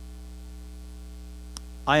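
Steady electrical mains hum in the recording, a constant low drone with thin steady tones above it, and one faint click about one and a half seconds in. A man's voice comes in right at the end.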